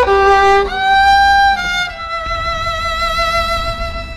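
Solo violin playing a slow, mournful melody, sliding between notes, then holding one long note through the second half that fades at the end.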